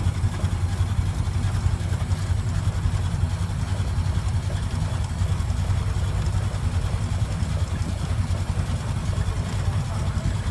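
1925 Ford Model T's four-cylinder side-valve engine running as the car drives along, heard from the driver's seat as a steady low rumble.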